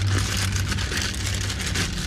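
Plastic mailer bag crinkling and rustling as it is pulled and torn open by hand, over a steady low hum.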